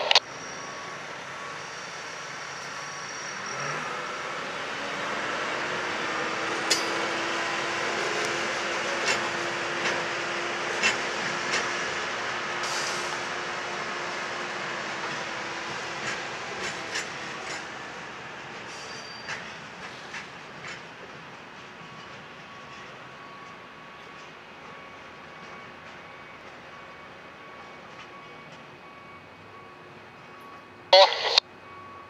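A Brandt road-rail truck's engine and the steel wheels of the gondola it is moving, rolling along yard track with scattered clicks over the rail joints. The sound grows louder from about four seconds in, peaks around the middle and fades as the cars move away.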